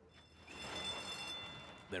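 Racetrack starting gate opening: the starting bell rings and the stall doors spring open as the horses break. It starts sharply about half a second in and fades over the next second and a half.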